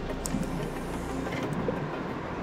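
Wind buffeting an action camera's microphone, a steady low rumble and hiss.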